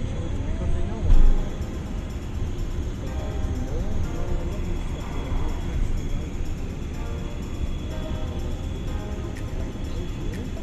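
Road and engine rumble inside a moving car's cabin, with music and faint voices over it, and a thump about a second in.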